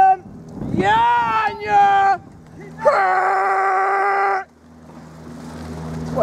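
A spectator's drawn-out shouts of encouragement to a rower: two long wordless yells, the second held on one steady pitch for about a second and a half.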